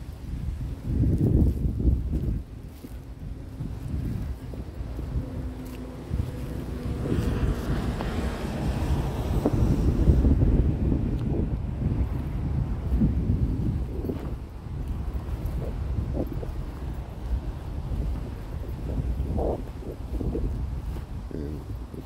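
Wind buffeting a phone's microphone: a low rumbling noise that swells and fades in gusts.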